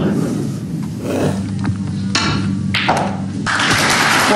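Snooker balls clicking: a few sharp knocks of cue and balls about halfway through, then audience applause breaking out near the end.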